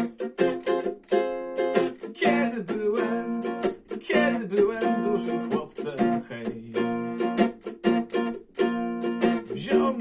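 Yamaha guitalele, a small six-string nylon-string instrument, strummed in a steady, quick rhythm of chords.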